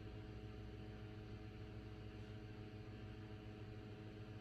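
Quiet room tone: a faint steady low hum over light hiss, with nothing happening.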